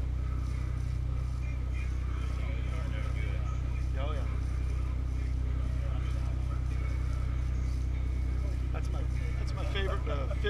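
A boat's engine running steadily, a continuous low drone under the cockpit, with faint voices now and then.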